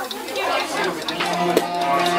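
People chattering over background music with a steady beat; the held music notes come up more clearly in the second half.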